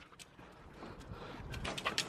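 Two dogs breathing and panting close by, growing louder toward the end, with a few light clicks.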